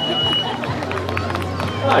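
Race finish-line ambience: a murmur of voices over a low steady hum, with scattered short taps. A steady high electronic beep cuts off about half a second in.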